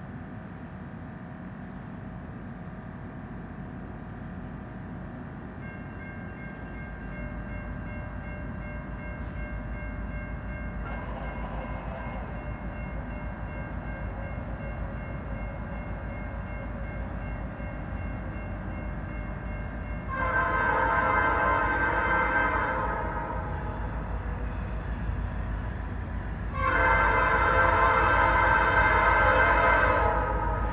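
Diesel freight locomotives approach with a low rumble that grows louder. The lead unit's Nathan P5 five-chime horn sounds two long blasts for a grade crossing, the second running on past the end. A faint short horn note comes about ten seconds before the first blast.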